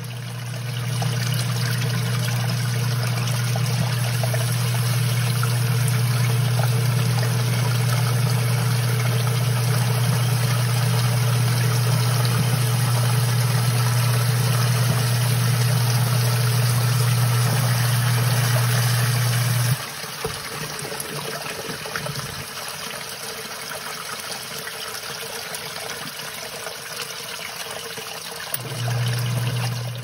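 Electric sump pump running in its pit with a steady low hum over the sound of water. The pump cuts off suddenly about two-thirds of the way through, leaving only water trickling into the pit, and kicks on again near the end. The short on/off cycling is the sign of how fast the pit keeps refilling after heavy rain.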